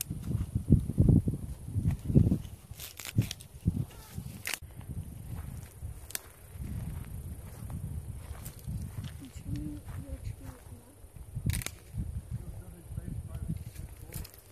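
Irregular low rumble of wind buffeting a phone microphone outdoors, with a few sharp clicks or taps scattered through it.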